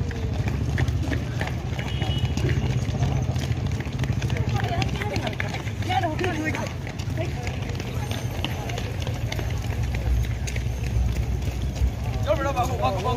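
Footsteps of many runners on an asphalt road, with indistinct voices of people passing and a steady low rumble underneath.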